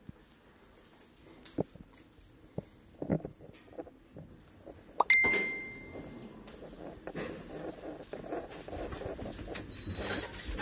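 Orona lift arriving at a landing: a few sharp clicks, then about halfway a loud clack with a single-tone chime lasting about a second. Knocking and handling noise follows as the landing door is opened.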